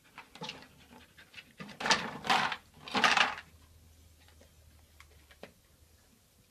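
Dog panting and sniffing in short breathy bursts, clustered about two to three seconds in, with a couple of faint clicks near the end.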